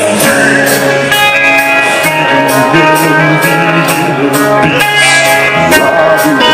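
Live rock band playing loudly: electric guitars and a steady drum beat under a singer's vocals through the PA, heard from the audience.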